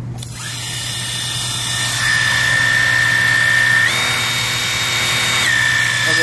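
Worx 40V Hydroshot battery pressure washer on its low-pressure setting: water spray hissing on the roof surface, starting just after the beginning, with a steady electric whine from its pump that steps up in pitch for about a second and a half after the middle, then drops back.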